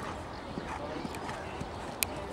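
Hoofbeats of a show-jumping horse cantering on sand arena footing, with indistinct voices in the background.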